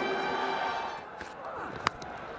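A held musical tone fades out, then a single sharp crack of cricket bat on ball near the end: an inside edge. Faint crowd noise runs underneath.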